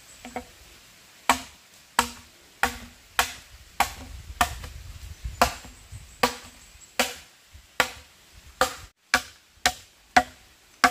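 Machete chopping into a green bamboo pole: a steady run of sharp strikes, about one and a half a second, each ringing briefly.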